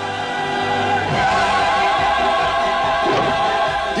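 Orchestral film music with a choir holding long, wavering notes, swelling louder about a second in.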